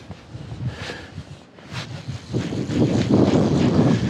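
Wind buffeting the microphone in gusts, quieter at first and growing louder a little past halfway.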